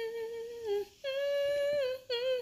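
A woman humming a slow, wordless tune. A long held note with a gentle waver slides down and breaks off just before the middle; a second, higher held note follows and drops away near the end.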